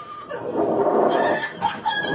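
Riders on a slingshot amusement ride screaming and yelling, heard through a TV's speakers; the cries are loud and strained, with short high-pitched shrieks near the end.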